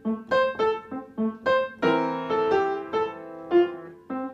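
Upright piano playing the closing bars of a simple beginner piece: short, detached notes about three a second, then from about two seconds in slower, longer held notes and chords as the ending is slowed down (ritardando).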